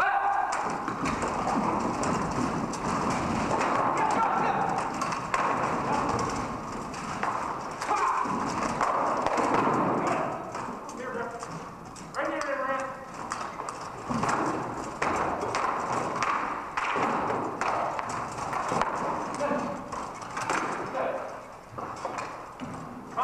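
Rattan swords and polearms knocking against helmets, armour and shields in SCA armoured combat sparring: many quick, irregular hard knocks, with people talking in the background.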